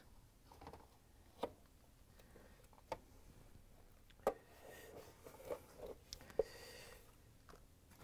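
Faint handling noises as the dishwasher's control board tray is lifted into place: a few light clicks and knocks spread out over several seconds, with soft rustling in the middle.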